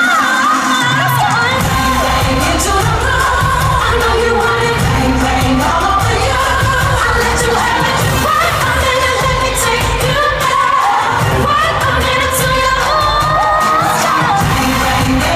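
Live pop song in an arena, recorded from the crowd: female lead vocals over a heavy pounding beat, loud and somewhat distorted. The beat comes in about a second and a half in.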